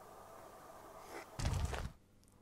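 Faint quiet background, then about one and a half seconds in a brief, low-pitched thump and rumble lasting about half a second.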